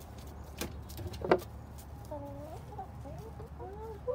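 Hens clucking in several short, low, curving calls through the second half, after two sharp knocks in the first part, the louder one a little over a second in.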